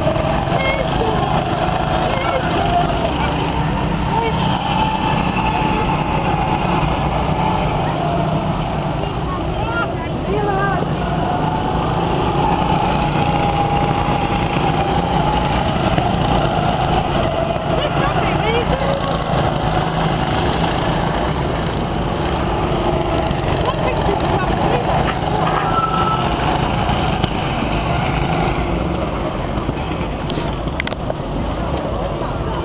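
Several go-kart engines running on a track, their pitch drifting up and down as the karts pass.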